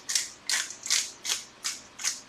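Pepper shaker shaken in quick, even strokes, about three a second, each a short bright rattle as pepper is sprinkled into the pan.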